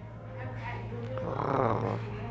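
A short wordless vocal sound, rising then falling in pitch about halfway through, over a steady low hum.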